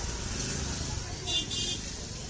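Busy street-market ambience: a steady low traffic rumble under crowd chatter, with two short high-pitched toots about one and a half seconds in.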